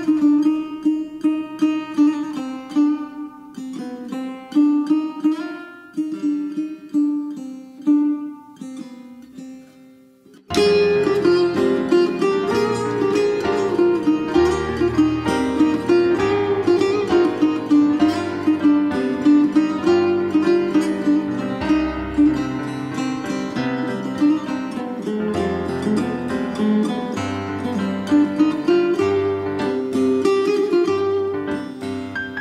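Setar, the Persian long-necked lute, plucking a melody over a steady drone. The notes thin out and fade, then about ten seconds in a fuller accompaniment enters suddenly with low bass notes, the piano joining the setar.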